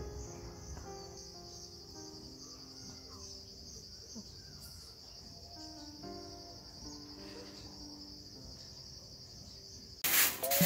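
Faint background music of soft, sustained keyboard-like notes that change every second or so, over a steady high-pitched insect chirring like crickets.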